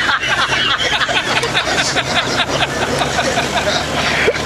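Onlookers chattering and laughing over a steady low engine hum.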